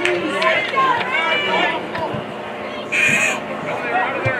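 Players and spectators shouting across a soccer field during play, with a brief shrill high-pitched cry about three seconds in.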